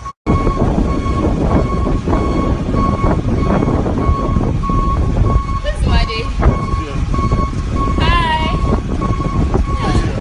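Steady low rumble inside a moving vehicle with muffled voices and a constant thin high whine. A short wavering voice rises above it about eight seconds in.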